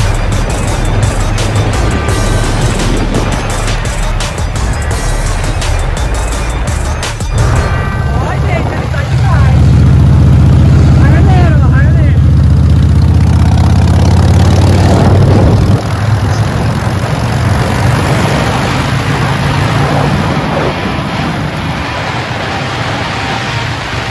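Background music over a motorcycle being ridden with a passenger, its engine sound and wind on the microphone mixed in. The low engine sound is loudest in the middle and drops off suddenly after about sixteen seconds.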